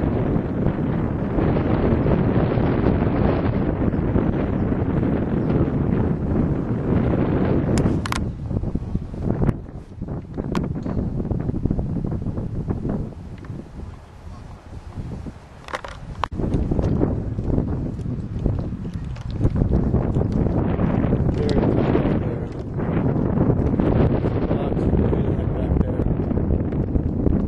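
Wind buffeting the camera microphone: a loud, gusting low rumble that eases off in the middle and comes back strong, with a few sharp clicks scattered through it.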